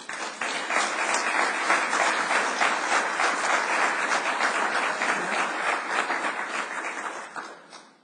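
Audience applauding: dense, steady clapping that starts at once and fades out near the end.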